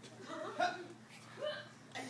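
Children's voices: two brief, high-pitched vocal sounds about a second apart, not clear words.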